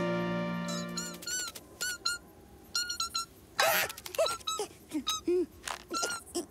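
A held music chord fades out in the first second. After it comes a string of short, high cartoon chick peeps, with a brief noisy burst about three and a half seconds in and a few lower, swooping calls after it.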